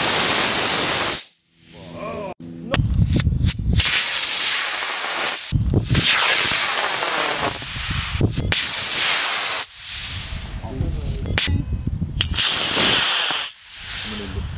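Rocket motors firing at lift-off: several harsh, hissing blasts of thrust, each one to two seconds long, starting and stopping abruptly.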